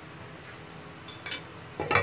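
A utensil scraping and knocking against a non-stick frying pan while spreading a little oil: a short scrape a little past halfway, then a louder knock just before the end.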